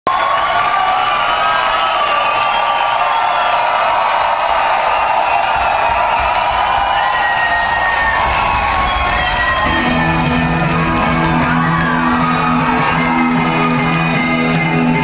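Live rock concert heard from the audience: the crowd cheers and whistles over a wavering background, then about ten seconds in the band starts the song with a repeated low guitar figure.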